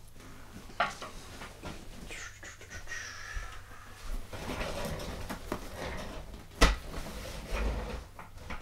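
Office chair creaking and squeaking as a person gets up from it and pushes it aside, with shuffling movement, then a single sharp knock late on.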